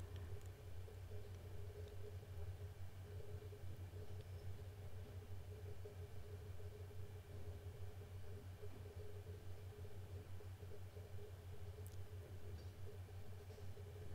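Faint room tone: a steady low hum with a fainter steady tone above it, and no other clear sound.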